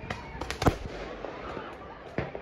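Fireworks going off in the open: three sharp bangs in quick succession, the loudest a little under a second in, with people's voices in the background.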